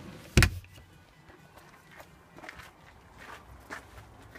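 A single loud thump about half a second in, followed by faint scattered knocks and ticks.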